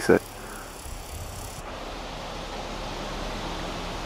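Steady, even background noise of an open outdoor setting, with no distinct sounds in it.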